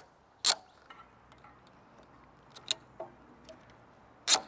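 Ratchet wheel strap on a Fiamma Carry Bike XL A rack being clicked tight over a bike wheel: one short sharp rasp about half a second in, then a few scattered light clicks.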